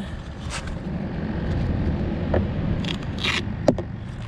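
Handling noise: scraping and rustling with a few short sharp clicks, the sharpest a little before the end, over a low steady rumble.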